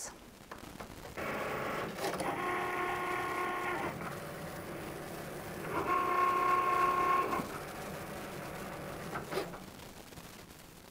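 Cricut Maker cutting machine running a print-then-cut job, its motors whining as the carriage and roller-fed mat move. The whine comes in two louder runs, one starting about a second in and a shorter, stronger one around six seconds in, with quieter running between.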